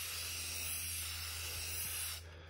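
Aerosol spray paint can (Rust-Oleum, rustic orange) spraying in one continuous, steady hiss as the nozzle is held down.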